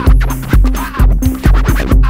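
Electronic dance music from a DJ set, driven by a heavy, regular kick drum a little over twice a second under a sustained bass line, with sweeping sounds in the mid range.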